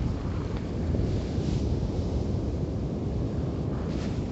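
Cyclone-force wind blowing hard and steadily, buffeting the microphone with a deep rumble.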